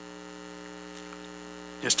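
Steady electrical mains hum: a low, even buzz made of several fixed tones that holds at one level. A man's voice starts a word near the end.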